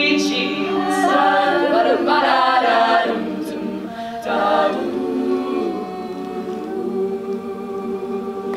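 Women's a cappella group singing, a solo voice carrying the melody over sustained backing chords from the other singers. Near the end everyone settles onto one long, steady held chord.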